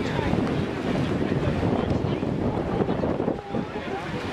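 Swim race ambience: swimmers splashing down the lanes under a steady wash of spectators' voices, with wind buffeting the microphone. The level dips briefly shortly before the end.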